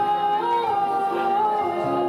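Male singer holding one long sung note into a microphone over a backing track; the pitch lifts briefly about half a second in, then settles, and moves to a new note near the end.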